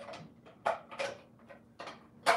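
Plastic parts of a vertical juicer's chamber being handled and fitted together: several light clicks and knocks spread over two seconds.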